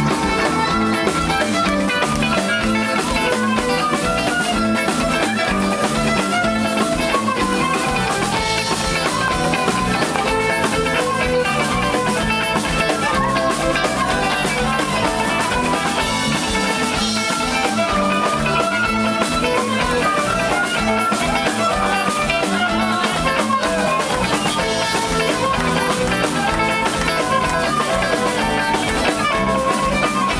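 Live band playing a loud, steady instrumental passage of a folk-rock song: acoustic guitar over a drum kit, with a keyboard.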